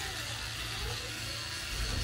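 Steady low hum with an even hiss above it, a continuous machine-like background noise.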